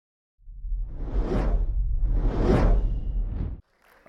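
Whoosh sound effects over a deep rumble: two big swells that rise and fade, then a smaller third, cutting off suddenly shortly before the end.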